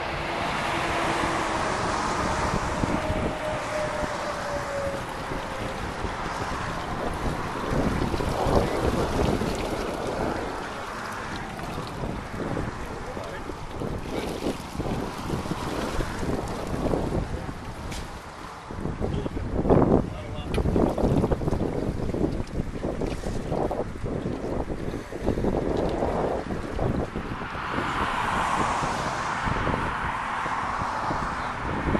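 Wind buffeting the microphone outdoors, a steady rumbling noise with scattered knocks and splashes, thickest about two-thirds of the way through.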